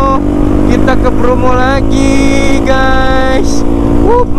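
Yamaha WR155R single-cylinder four-stroke motorcycle engine running steadily while riding. Over it a man's voice sings held, gliding notes without clear words.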